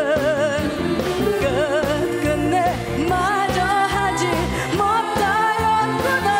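A woman singing a Korean trot song into a handheld microphone, with a wide vibrato on her held notes, over live band accompaniment.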